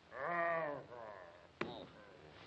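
A cartoon character's wavering vocal cry, then a weaker second sound, and a sharp click about one and a half seconds in.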